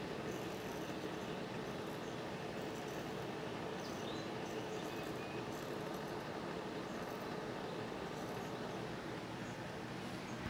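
Faint, steady background hum with a soft hiss and no events, plus a brief faint high chirp about four seconds in.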